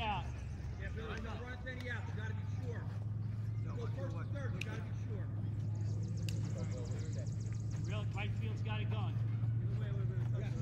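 Indistinct voices of players calling out across an outdoor softball field, over a steady low hum, with a couple of sharp clicks around the middle.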